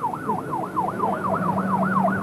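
An emergency vehicle siren wailing in a fast yelp, its pitch rising and falling about four times a second, with a steady low tone underneath.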